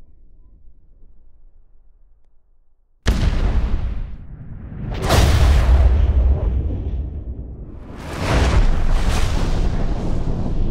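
Acetylene-laced intake charge igniting in a see-through Wankel rotary engine: a sudden deep blast about three seconds in, then two more drawn-out, rumbling surges as flame blows out of the exhaust port.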